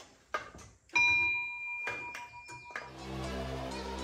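A few light knocks, then a single bright bell-like ding about a second in that rings on for nearly two seconds before cutting off. Outro music with a steady low beat starts about three seconds in.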